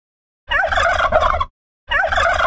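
Turkey gobbling: one gobble lasting about a second starting half a second in, and a second gobble starting near the end.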